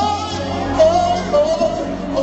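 Live worship music: a man sings a gliding, drawn-out melody into a microphone over sustained instrumental backing.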